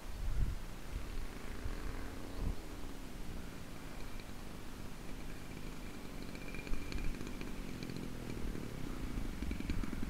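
Engine of a large-scale RC Beaver model plane droning faintly and steadily as it flies low over the field, with a faint high whine in the middle of the stretch. Wind rumbles on the microphone underneath.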